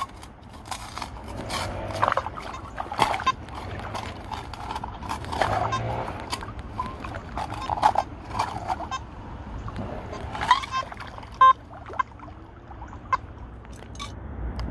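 Shallow river water splashing and sloshing as sediment is scooped and shaken through the mesh screen of a floating sifter, with irregular gravel scrapes and knocks. A few brief tones sound a little after ten seconds.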